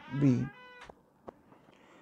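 A short, high-pitched cry or squeak with a steady pitch lasting under half a second, followed by two faint clicks.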